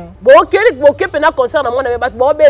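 Only speech: a person talking without a break.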